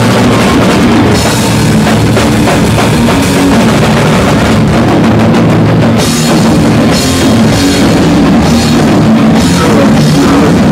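Hardcore band playing live at full volume: electric guitars and a drum kit pounding, with cymbal crashes washing over the mix, loud throughout.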